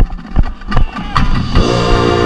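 Marching band playing close up, dominated by the low brass of a marching tuba: sharp drum hits about two or three a second over low held tuba notes, then about one and a half seconds in the full brass section comes in on a sustained chord.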